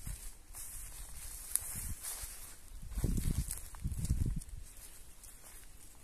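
Footsteps of someone walking down a dirt path, heard as soft low thuds that are loudest about three to four and a half seconds in.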